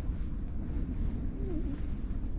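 Strong wind buffeting a fabric ice-fishing hut, heard as a steady low rumble of wind noise on the microphone.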